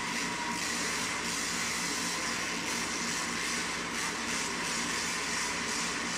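Monster truck's supercharged V8 engine running hard as the truck drives across the arena floor, heard as a steady, dense noise with no breaks.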